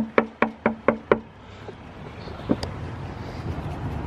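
Knuckles rapping on a front door: about six quick knocks in the first second or so, then one more single knock about two and a half seconds in.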